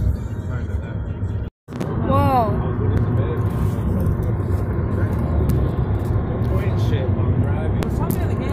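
Steady low road rumble inside a moving car's cabin at highway speed, from tyres and engine. It drops out to silence for a moment about a second and a half in, then carries on steadily.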